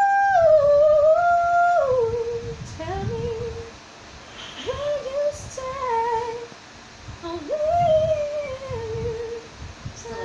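A woman singing unaccompanied, a slow melody of long held notes that slide and bend into ornamented runs, strongest on a high held note at the start and on a rising phrase near the end.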